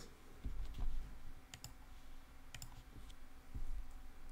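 A few sparse, light clicks at a computer as the code editor is switched to another file, over a faint low rumble.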